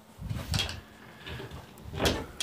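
A few soft, low thumps of footsteps and camera handling, with a light knock about half a second in and another near the end.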